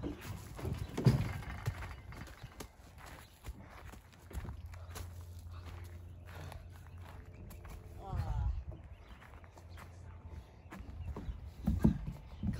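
Knocks and thumps of boys scuffling on a playground climbing structure, loudest about a second in. Then a steady low rumble of wind on the microphone, and a short vocal cry about eight seconds in.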